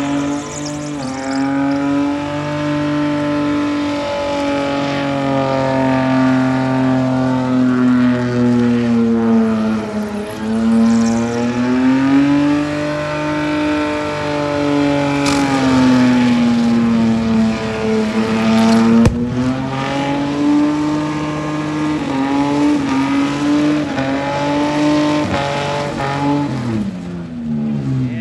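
A car engine held at high revs through a burnout, its rear tyres spinning, the pitch dipping and climbing back several times as the throttle is worked. There is one sharp crack partway through, and near the end the revs drop away.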